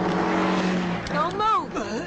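Action-film soundtrack: car engine and road noise over a steady low drone, then about a second in a loud cry or squeal that rises and falls in pitch.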